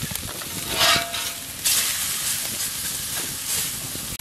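Diced potatoes, bacon and vegetables sizzling on a hot plancha over an open fire, with a pork neck steak frying on a small griddle beside them. The sizzle swells briefly about a second in and again around the middle.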